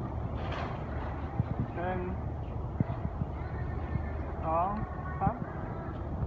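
A voice counting "one… two, three" in Thai, as if for a photo, over a steady low hum. A few light knocks are scattered through it.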